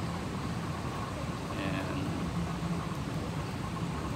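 Airport terminal ambience: a steady low hum, with faint voices of passers-by in the distance.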